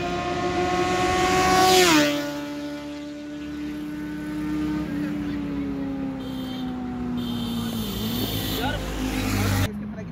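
Kawasaki Z900 inline-four with an aftermarket full-system exhaust passing by at speed. The engine note climbs as it approaches, is loudest just before two seconds in, drops sharply in pitch as it goes past, then slides lower and fades as it pulls away. The sound cuts off suddenly near the end.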